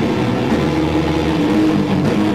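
Distorted electric guitars through the amplifiers, holding a sustained droning chord at high volume.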